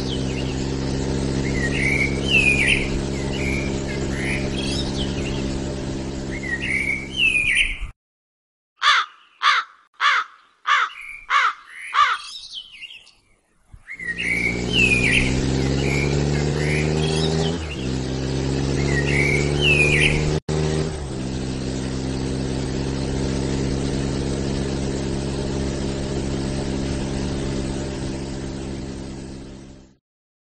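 Car engine running steadily, with birds chirping over it. Partway through, the engine stops and about seven falling chirps follow over several seconds. Then the engine comes back, rising in pitch at first, and runs on without the birds before fading out near the end.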